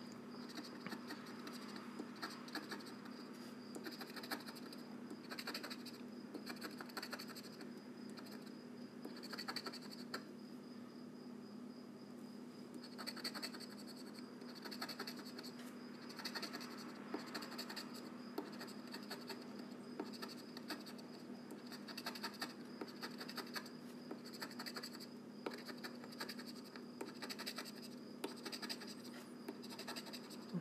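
Scratch-off lottery ticket being scratched: repeated runs of quick, faint scraping strokes as the coating is rubbed off the play area, over a steady low hum.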